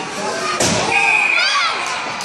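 A single sharp crack of an ice hockey shot about half a second in, the puck struck and hitting hard, ringing briefly in the rink. High-pitched voices shout just after, over the murmur of the onlookers.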